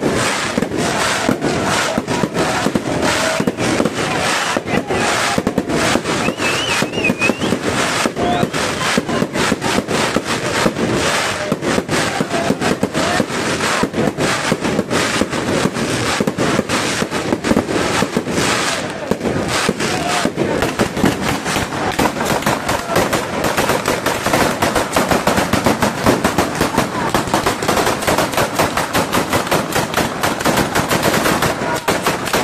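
A batteria alla bolognese firework display: firecrackers bang in a rapid, unbroken rattle. The bangs grow faster and denser in the last third.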